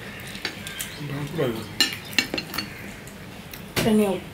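Ceramic bowls and plates knocking and clinking on a tabletop as curry is served from a bowl, with several sharp clinks in the second half and the loudest near the end. A voice sounds briefly about a second in and again at the end.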